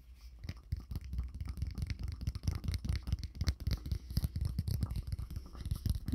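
Tarot cards being shuffled and handled close to the microphone: a fast, continuous run of soft clicks and rustles that starts about half a second in.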